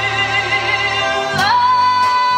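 A woman singing long held notes with vibrato over instrumental accompaniment, rising to a higher sustained note about one and a half seconds in.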